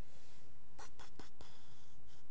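Laptop keyboard keystrokes: four quick taps in a row about a second in, over a steady low room hum.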